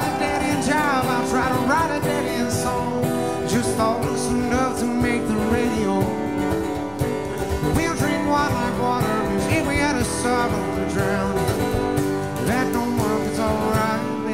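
Country-Americana band playing an instrumental passage without vocals: a fiddle carries wavering melodic lines over strummed acoustic guitar, bass and a steady drum beat.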